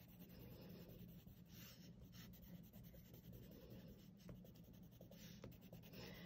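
A red colored pencil scratching faintly on paper in quick, continuous shading strokes as it colors in a drawing.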